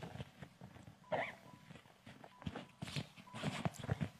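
Faint, scattered clicks and rustles of a handbag being handled and searched, with quiet gaps between them and a small cluster near the end.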